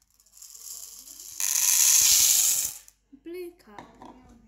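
A stream of small shiny silver balls poured from a bowl into a plastic cup: a light trickle, then a dense rattling cascade for over a second that stops suddenly.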